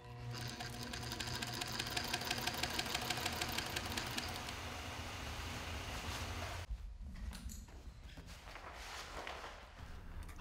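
Industrial sewing machine stitching a seam through layers of upholstery fabric at a steady speed: a fast, even run of stitches over the motor's hum. It stops about two-thirds of the way through.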